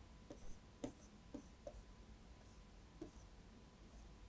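Faint ticks and light scratches of a stylus on a tablet screen, drawing quick hatching strokes: a short tick every fraction of a second, unevenly spaced, over near silence.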